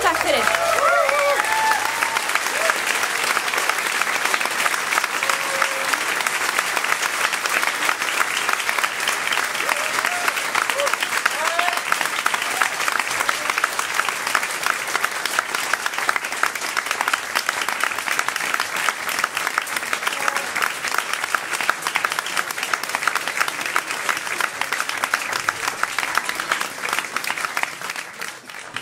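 Audience applauding steadily after the final song, with a few short whoops and cheers near the start and again a little before the middle.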